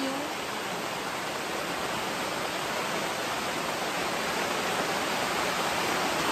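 Steady rain falling on a tent canopy roof, an even hiss that grows slightly louder toward the end.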